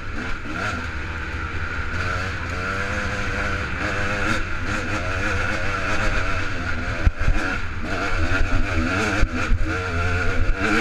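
A 250 cc enduro motorcycle's engine revving up and down as it climbs rough single track, with the throttle opening and closing constantly. A few sharp knocks cut in about seven seconds in and again near the end, as the bike hits the trail.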